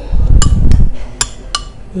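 Metal eating utensils clinking against ceramic dishes: four sharp clinks, with a low rumble in the first second.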